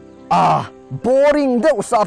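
A man speaking in Mizo over soft, steady background music. A short, harsh sound comes about a third of a second in, before the speech resumes.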